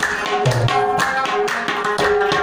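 Tabla played in a quick rhythm: crisp ringing strokes on the small treble drum, with a deep bass-drum stroke about half a second in. Sustained melodic notes from an accompanying instrument run underneath.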